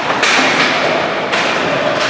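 Ice hockey play on a rink: two sharp knocks about a second apart over a steady noisy background of the game.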